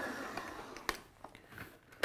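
A Kenwood Titanium Chef Patissier XL stand mixer's 1500-watt motor and dough hook winding down and fading out after being switched off, followed by a sharp click a little under a second in and a few light knocks as the mixer's tilt head is handled.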